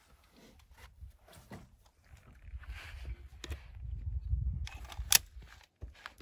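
Rustling and bumping as a person sits down at a wooden picnic table and handles a CZ 75B pistol, with scattered small clicks and one sharp, loud click about five seconds in.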